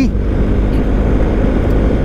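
BMW GS Adventure motorcycle on the move, its engine running steadily under a heavy haze of wind and road noise.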